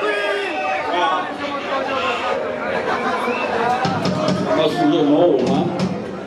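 A concert crowd's overlapping voices, talking and calling out over one another in a club.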